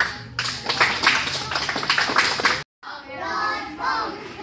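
A small crowd applauds a child's belt promotion, with many hands clapping for a little over two seconds before the sound cuts off abruptly. After that, children's voices are heard.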